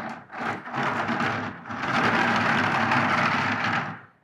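Large 3D-printed tank turret being spun round by hand on its homemade large bearing: a continuous rough rolling rumble, the bearing running far from smooth. The rumble dips briefly twice in the first two seconds, then runs steadily.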